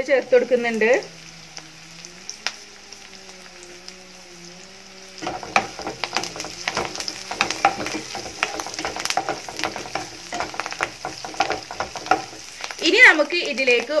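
Shallots, garlic, green chillies and curry leaves frying in hot oil in a non-stick pan, a quiet sizzle at first. From about five seconds in, a wooden spatula stirs the mixture with quick scrapes and clicks against the pan over the sizzle, until shortly before the end.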